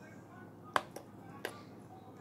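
A glass test tube clicking against a plastic test-tube rack as it is set down: three short sharp clicks, the first and loudest a little under a second in.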